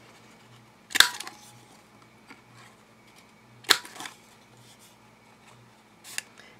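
Handheld corner rounder punch snapping through a paper card corner twice, two sharp clicks about two and a half seconds apart as each corner is rounded.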